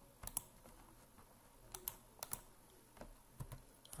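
Faint computer mouse and keyboard clicks: a scattered series of single sharp clicks, with command keys typed near the end.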